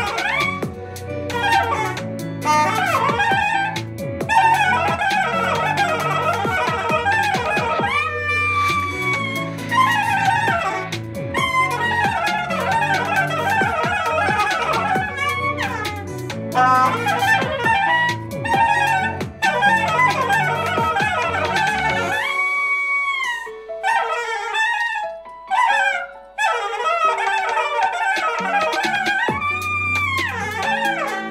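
Straight soprano saxophone playing an improvised smooth-jazz solo line with sliding, bent notes over a backing track with a bass line. The backing's bass drops out about two-thirds of the way in and comes back just before the end, leaving the saxophone alone for a few seconds.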